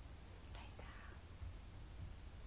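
A person's faint whisper, about half a second in, over low room hum.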